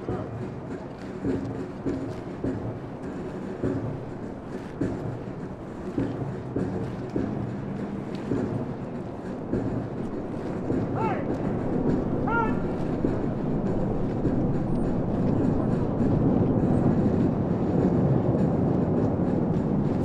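Boots of a formation of airmen marching in step on pavement, a steady rhythm of many footfalls together that grows louder as the formation draws near. Two short shouted calls come a little past the middle.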